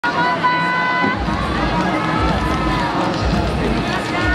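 Large ice-arena ambience: spectators chattering, with music over the loudspeakers. A high note is held for about a second near the start, then sliding tones follow.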